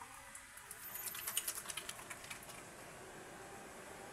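Wet, soapy hands rubbing a rubber fuel-pump o-ring clean: a faint run of small wet clicks and squelches, thickest between about half a second and two seconds in, then near quiet.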